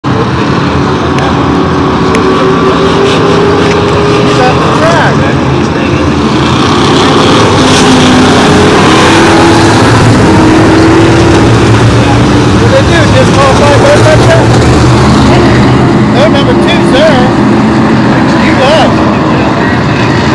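Modified race cars' engines running at racing speed around an oval track, a loud, continuous engine sound that swells a little as the pack comes past, heard from the grandstand with indistinct spectator voices mixed in.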